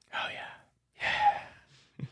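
Two soft breathy out-breaths of a man winding down from laughter, a short one near the start and a longer one about a second in.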